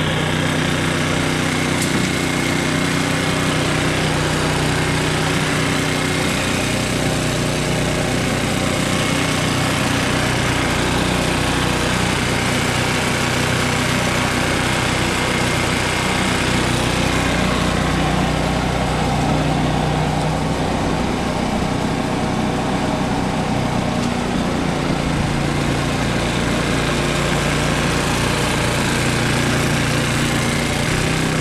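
Qualcast petrol cylinder mower fitted with a scarifier/lawn-rake cassette, its small petrol engine running steadily as it works across the lawn raking up leaves.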